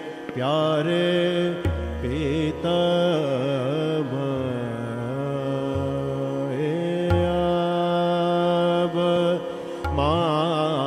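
Hindustani classical singing in Raag Bhupali: a male voice sings long, wordless phrases with wavering, gliding ornaments over a steady drone. A few low drum strokes sound under it, about two seconds in and again near the end.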